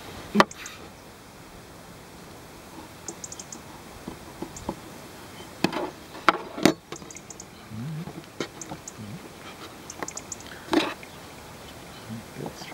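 Sharp knocks and taps from a metal splicing fid and rope being worked on a metal tabletop, a handful spread out, the loudest just under half a second in. Faint quick high ticks come in short clusters between them.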